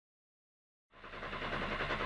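Silence, then about a second in a Renault Clio S1600 rally car's engine fades in, idling steadily and heard from inside the cabin.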